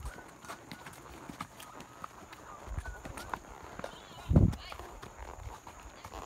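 Horses walking on a dirt track, their hooves clopping in a faint irregular patter, with a brief louder low sound about four and a half seconds in.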